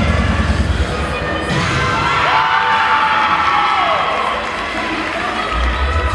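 Crowd cheering and shouting over loud routine music with a heavy beat. The cheering swells about a second and a half in while the beat drops away, and the beat comes back near the end.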